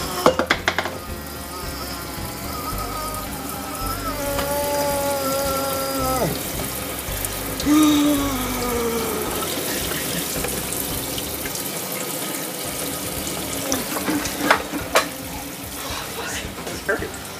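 Kitchen faucet running steadily into a stainless-steel sink, water splashing as skin is rinsed under the stream.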